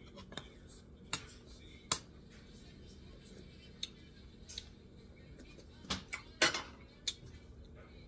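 Metal serving spoons clinking against a stainless steel stockpot while a macaroni salad is scooped and stirred: a handful of short, sharp clinks at irregular intervals, the loudest about two-thirds of the way in.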